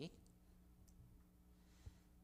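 Near silence: room tone with a steady low hum, and one short soft click near the end.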